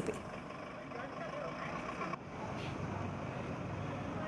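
Faint outdoor street sound with a motor vehicle engine running and indistinct voices in the background; the sound changes abruptly about two seconds in.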